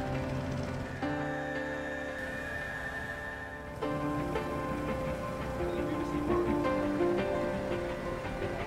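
Background music: sustained chords that change about a second in and again near four seconds, with a melody moving over them in the second half.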